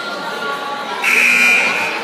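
Gym scoreboard buzzer sounding once for about a second, starting about a second in, over crowd chatter. It signals the end of a timeout as the huddle breaks.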